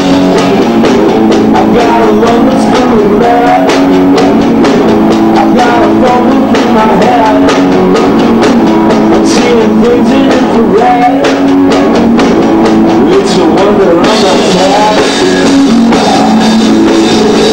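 Two-piece rock band playing live: a loud, continuous electric guitar over a drum kit, with frequent cymbal and drum hits.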